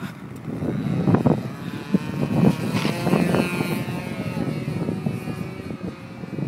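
RC model airplane's engine and propeller running as the plane takes off and climbs out. The engine note comes through in the second half, over rough, gusty wind noise on the microphone.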